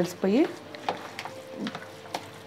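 Plastic spatula stirring soft curd rice in a plastic container: quiet squishing and scraping with a few light ticks, after a woman's voice at the start.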